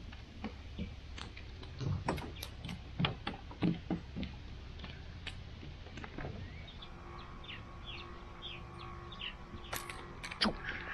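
A small sunfish flopping on weathered wooden dock boards: a run of irregular slaps and knocks, thickest about two to four seconds in, dying away by about six seconds.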